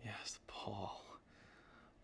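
A man's voice, soft and breathy like a whisper, for about the first second, then quiet.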